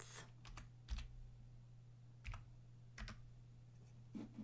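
Faint computer keyboard keystrokes and mouse clicks, about half a dozen scattered taps as a new width value is entered, over a low steady hum.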